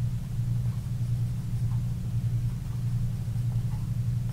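A steady low hum fills the room, with faint light scratches of a colored pencil coloring on cardstock.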